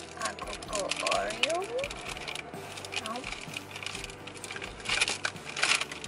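Scattered crackly clicks and rustling from hot cocoa Oreo cookies being handled and bitten, densest about a second in and again near the end. Brief wordless voice sounds come about a second in.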